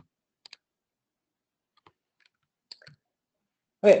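A few faint, short clicks spaced irregularly, then a man says "okay" near the end.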